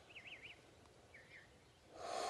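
Faint songbird calls: a few short warbling whistles, two in the first half-second and a brief one just past a second in, against near silence.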